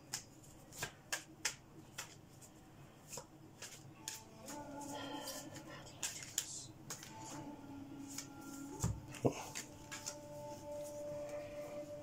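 Hands handling and shuffling tarot cards on a desk: a scattered run of short, sharp clicks and taps.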